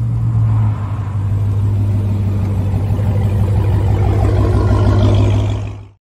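Supercharged V8 of a Chevrolet Camaro ZL1 1LE running at low revs with a steady drone, getting a little louder before fading out at the end.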